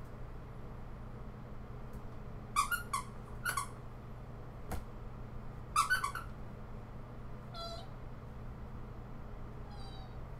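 Squeaker inside a plush pony toy squeezed by hand, giving several short, high squeaks in two bursts, about two and a half and six seconds in, with a single click between them and a fainter squeak near the end.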